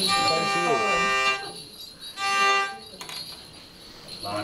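Tekerő (Hungarian hurdy-gurdy) sounding two steady, buzzy drone notes: a held note of about a second and a half, then a shorter one about two seconds in, as the instrument is tried before the song.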